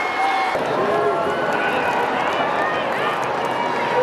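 Many voices talking and calling out at once, none clear: the chatter of a crowd of football players gathered together. About half a second in, the sound cuts to a closer, fuller mix of voices.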